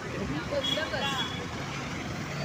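Steady traffic and road noise heard from a moving two-wheeler in city traffic, with faint voices in the background.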